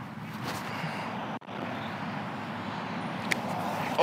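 Steady outdoor background noise of distant road traffic and wind, with a brief break about a second and a half in and a short faint click near the end.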